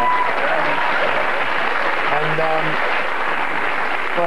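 Studio audience applauding and laughing, with a voice heard briefly about halfway through.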